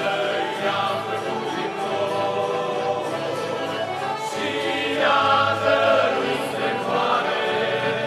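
Male vocal group singing together, accompanied by two accordions and an acoustic guitar, swelling a little louder about five seconds in.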